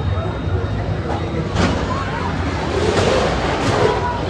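Wind rumbling on the microphone over a background of crowd chatter and faint distant voices at an amusement park.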